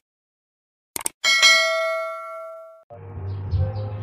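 Clicks, then a bright bell ding that rings for about a second and a half and cuts off suddenly: the sound effect of an animated YouTube subscribe button being clicked.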